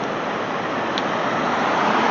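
Steady rushing noise of choppy river water over the Falls of the Ohio.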